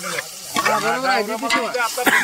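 Onion masala sizzling in a large aluminium pot over a wood fire while a ladle stirs it, with people's voices over the frying.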